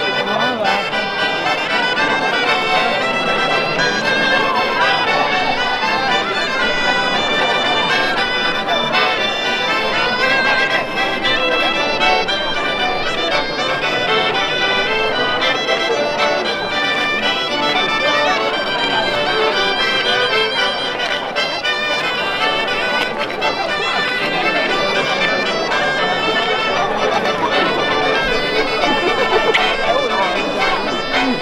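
Traditional Quattro Province folk dance tune played on accordion and piffero, the Apennine shawm, running without a break for couples dancing, with crowd voices underneath.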